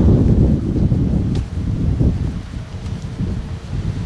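Wind buffeting the camcorder's microphone: a low rumble that eases somewhat in the second half.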